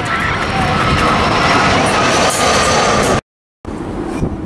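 An easyJet Airbus A320-family jet passes low overhead on landing approach: loud jet engine roar with a steady whine slowly dropping in pitch, and wind buffeting the microphone. The sound cuts off abruptly about three seconds in.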